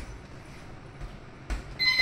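Gloved punches thudding on a double-end bag: a sharp hit at the start, a lighter one about a second in and another at about a second and a half. Near the end a loud electronic beep sounds, the round timer marking the end of the round.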